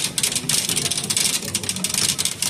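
Plastic shopping cart rolling across a hard store floor, rattling with a rapid, continuous clatter of small clicks.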